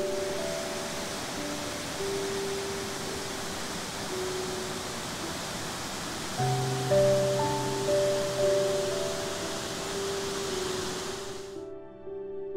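Steady rushing of a 70-foot waterfall under soft background music of slow, held notes. The water sound cuts off suddenly near the end, leaving only the music.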